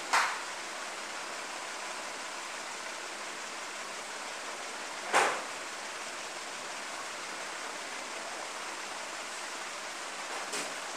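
Steady hiss of background noise, with two short scratchy strokes of a marker on a whiteboard, one at the very start and one about five seconds in.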